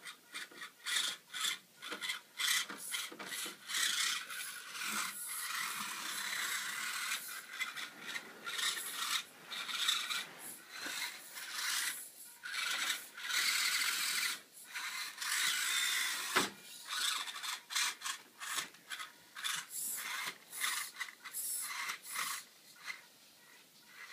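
A micro RC rock crawler's small electric motor and gears buzz in stop-start bursts and a few longer runs as the throttle is worked, with its tyres scrabbling over the hard plastic bodies of other RC trucks.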